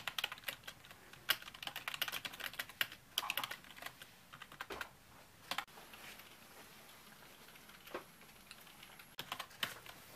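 Typing on a Lenovo computer keyboard: rapid, irregular key clicks that thin out to a few scattered taps for about three seconds past the middle, then pick up again near the end.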